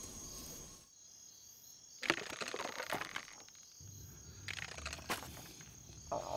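Faint night ambience of insects, likely crickets, a steady high thin trill, with scattered soft crackles about two seconds in and again around five seconds.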